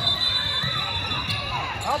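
Basketball being dribbled on a hardwood gym floor, with spectators' voices calling out. A thin, steady high tone is held for about a second and a half.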